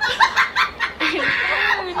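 A woman's exaggerated comic crying: a run of quick, choppy sobbing catches, then a longer strained wail about a second in.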